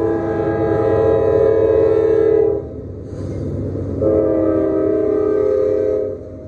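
Multi-chime air horn of a Norfolk Southern diesel freight locomotive sounding two long blasts, one cutting off about two and a half seconds in and the next starting about a second and a half later, over the low rumble of the passing diesel locomotives.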